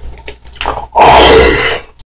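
A person's voice letting out a loud, heavily distorted burst about a second in, after some quieter sounds.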